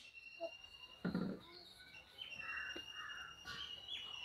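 Faint birds calling, among them crows cawing, with thin high whistled notes in the second half.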